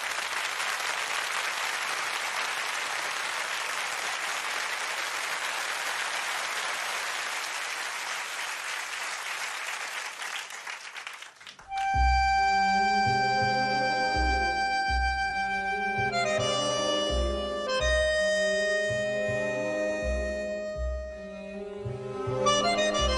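Studio audience applauding steadily for about eleven seconds, then dying away. Argentine tango music then starts, with long held accordion-like reed notes over a regularly pulsing bass.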